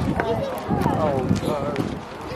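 Indistinct voices of several people talking at once, none of it clear enough to make out words.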